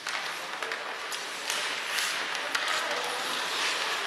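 Ice hockey play: skates scraping on the ice with scattered sharp clicks and taps of sticks and puck.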